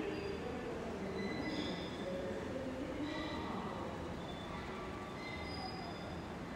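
A train moving through the station: a steady rumble with several thin, high tones that waver and come and go.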